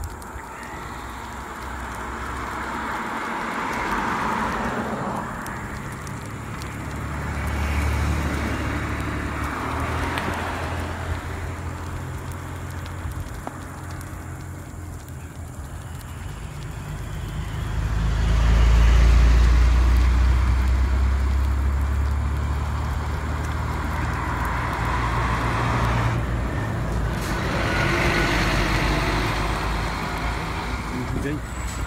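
Highway traffic passing close by, vehicles going past one after another in swells that rise and fade. The longest and loudest pass has a deep rumble, starting about eighteen seconds in.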